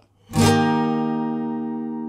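Journey OF660M acoustic guitar strummed once about a third of a second in: a D-sharp major barre chord at the sixth fret, left ringing and slowly fading.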